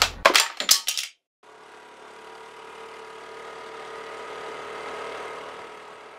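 A mobile phone dropped onto a hard tiled floor, clattering in several quick hits in the first second as its back cover comes off. A faint steady droning tone follows from about a second and a half in.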